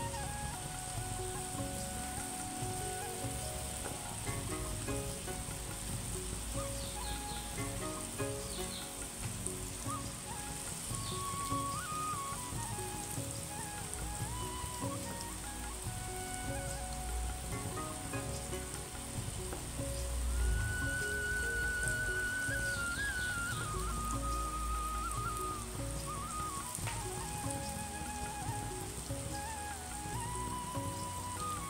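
Palm-fruit batter fritters sizzling in hot oil in a cast-iron kadai, a steady hiss, under background music with a wavering high melody.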